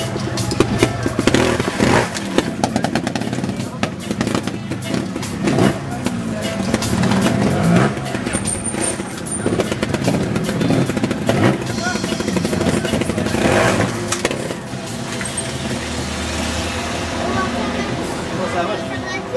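Trials motorcycle engine revving up and down in short bursts as the bike is hopped up a rock section, with voices talking throughout.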